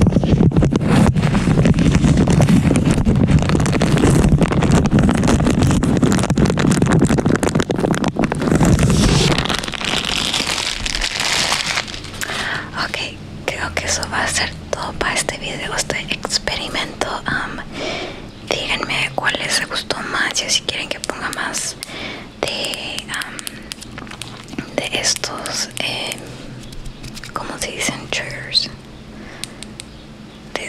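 A clear plastic bag being rubbed and crinkled directly on a microphone, a loud, dense low rumble with crackle, stops about nine seconds in. Soft whispered talking follows.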